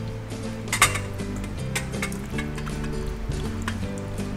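Background music with held instrumental notes, over which a glass bowl clinks sharply against the rim of a metal colander about a second in, followed by a few lighter clinks as marinated fish is tipped into it.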